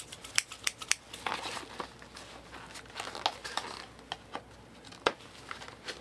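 Metal scissors snipping close to the microphone in sharp, irregular clicks, with crinkling of a wrapper between the snips.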